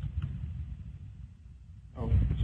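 A pause in speech: low background rumble from the recording, fading gradually, with a faint single click near the start.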